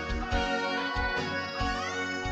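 Instrumental band music with no singing: a steady drum beat under held chords, and a lead line that slides up in pitch near the end.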